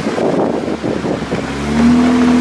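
Jeep concept vehicle's engine running under load on a rough off-road trail, with rumbling tyre and wind noise. About a second and a half in, a steady droning engine note comes in and grows louder.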